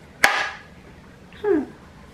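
A single sharp wooden clack from handling a carved wooden incense box, its lid or body knocking as it is turned over. About a second later comes a short vocal sound that falls in pitch.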